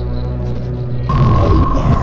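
A deep, dense, droning hum from the track. About a second in, a thin steady high whine joins it.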